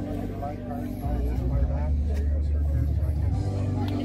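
A vehicle engine running with a low rumble for a couple of seconds, starting about a second in, under background talk.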